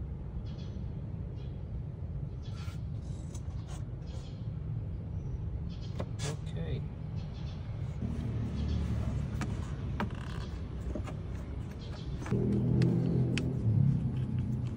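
A steady low rumble that grows louder near the end, with a few sharp clicks as the plastic intake tube and its hose clamp are refitted by hand over a metal turbo inlet insert.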